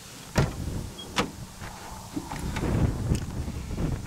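The rear door latch of a 2008 Ford E350 van releases with a sharp clack as the handle is pulled, then there is a second clunk about a second later as the door opens. Rustling and knocking handling noise follow.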